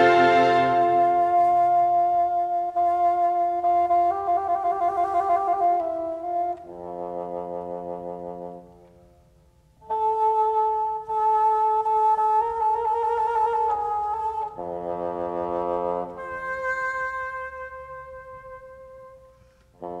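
Bassoon playing unaccompanied: a line of long held notes, some trilled. It breaks off into near silence about halfway through and again near the end.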